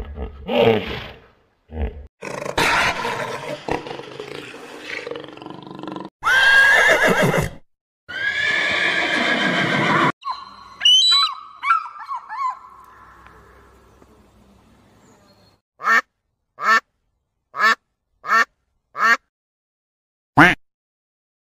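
A run of animal calls. Hippopotamuses grunt and call over the first few seconds, then horses neigh with long, wavering whinnies. Near the end a mallard quacks five times in quick succession.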